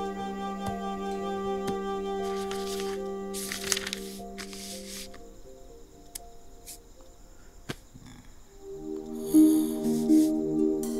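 Film background score of held, sustained notes. The music thins out to a quiet stretch about halfway through and swells again near the end. Two short swishes come around three to four seconds in.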